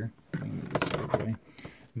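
Hands handling an MFJ SWR and power meter as its blue range push-button is pressed in: rustling with a few sharp plastic clicks.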